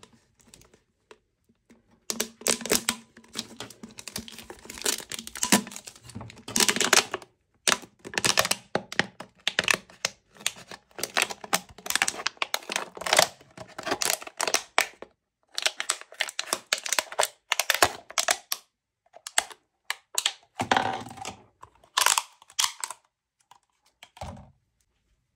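Small scissors cutting through a thin plastic water bottle: a long run of sharp crackling snips, starting about two seconds in and pausing briefly now and then, with the bottle crinkling as it is turned in the hand.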